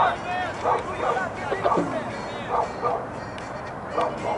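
A dog barking several times in short, sharp barks, over a background murmur of voices.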